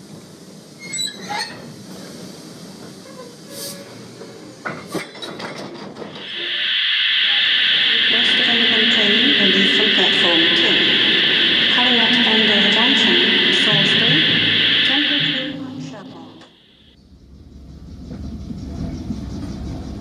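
Model steam locomotive sound effect: a loud, steady hiss of steam blowing off, starting about six seconds in and lasting about nine seconds before fading, with voices murmuring beneath it. A low rumble builds near the end.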